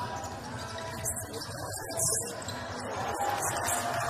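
Indoor basketball game: the ball bouncing on the hardwood court and players' shoes, over a steady hall crowd noise that grows louder in the last second or so as a basket is scored.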